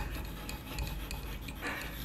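Chalk scraping across a blackboard as a word is written.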